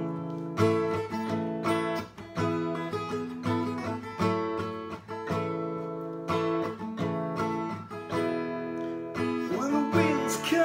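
Acoustic guitar with a capo, strummed chords in a steady rhythm with a new strum about every second. A man's singing voice comes in near the end.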